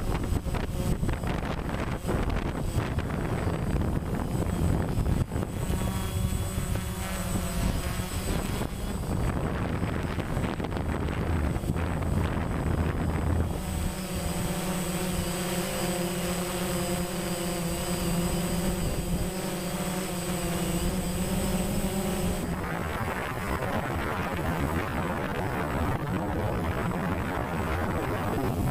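DJI Phantom quadcopter's electric motors and propellers running in flight, heard from the GoPro mounted on its own frame: a steady whirring hum that holds its pitch, over a constant rushing of wind across the microphone.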